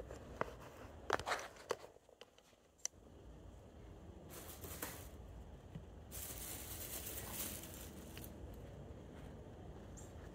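Faint handling noise: a few clicks and knocks in the first three seconds, then two stretches of rustling, around four to five seconds in and again from about six to eight seconds, as the camera is moved and a product tube and microfiber applicator pad are handled.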